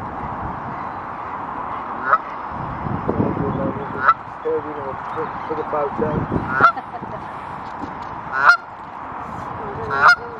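Canada geese honking: five short, sharp honks about two seconds apart, over steady background noise.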